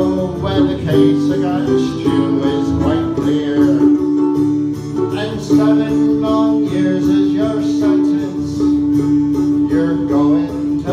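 Live Irish folk music: two acoustic guitars playing together, with a long steady note held over them from about halfway through.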